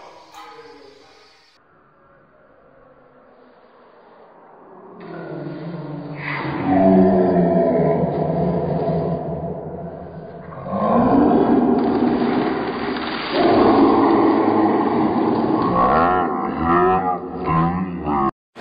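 A man's loud, strained yelling under a heavy barbell squat. It starts quietly and builds from about five seconds in into long drawn-out shouts, with brief dips before each new effort.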